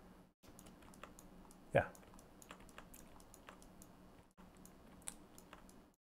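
Faint computer keyboard typing: a scatter of light key clicks, with one brief louder sound about two seconds in.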